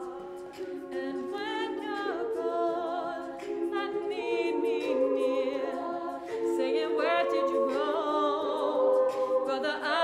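A cappella vocal ensemble singing a song in close harmony: several voices hold chords while a lead line with vibrato moves above them, with no instruments.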